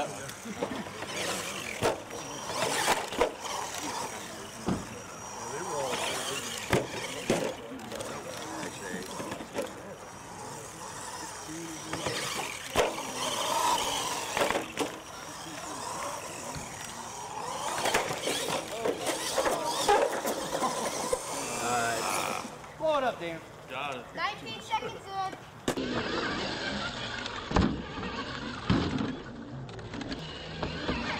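Radio-controlled monster truck driving and jumping, with repeated sharp knocks and thuds as it lands and hits ramps, over spectators' background chatter.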